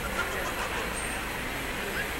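Steady city street ambience: traffic noise with indistinct voices of passers-by.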